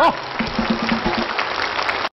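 Studio audience applauding, with laughter at the start.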